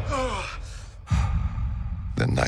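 A man gasps awake from a nightmare, a sharp intake followed by a falling, voiced sigh. About a second in, a deep low rumble starts.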